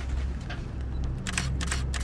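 A camera's shutter firing in a quick run of sharp clicks, starting a little past halfway, over a low steady rumble inside a vehicle.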